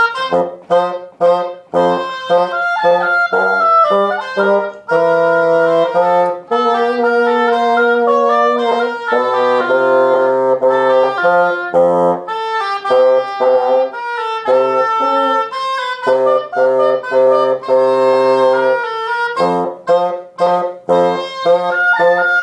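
Oboe and bassoon playing a duet, the oboe carrying the upper line over the bassoon's lower part. It opens with short detached notes, moves into longer held notes in the middle, and returns to short notes near the end.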